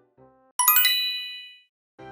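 A bright, sparkly chime sound effect: a quick run of high bell-like dings about half a second in, ringing out and fading within about a second. It is an editing transition sting between two pieces of background music.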